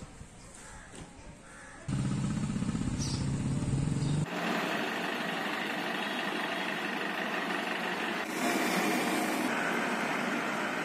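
Faint market ambience, then from about two seconds in outdoor street sound in abruptly cut segments: first a vehicle engine running low, then steady traffic noise with birds calling.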